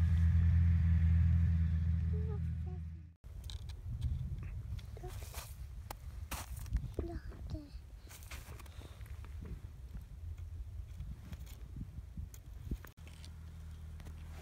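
Steady low hum of an idling engine, cut off sharply about three seconds in; then irregular crunching and small knocks in snow with a few faint voice sounds, and the engine hum comes back near the end.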